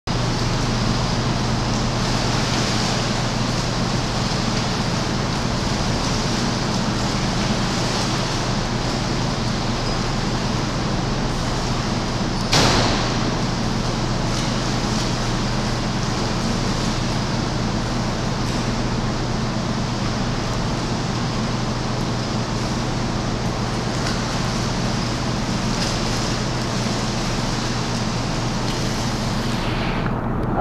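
Indoor swimming pool ambience: a steady low hum under an even wash of water noise as a swimmer kicks on her back, with one sharp knock about twelve and a half seconds in.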